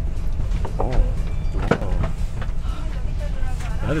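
Steady low rumble of a KTX bullet train carriage interior while the train stands at the platform, with brief snatches of voice.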